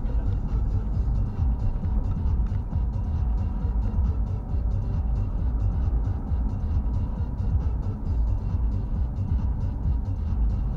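Car driving, heard from inside the cabin: a steady low rumble of engine and road noise, with music playing faintly along with it.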